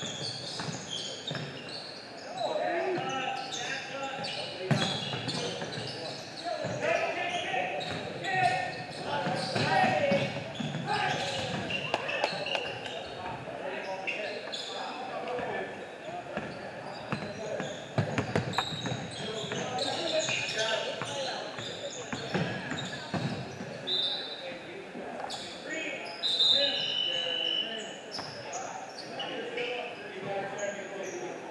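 Basketball game sounds in an echoing gym: the ball bouncing on the hardwood court, with voices of players and spectators calling out. A few short high sneaker squeaks come in the later part.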